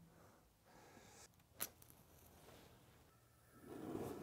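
Near silence: room tone, with one faint click about a second and a half in. In the last half second the steady rush of a propane burner's flame fades in.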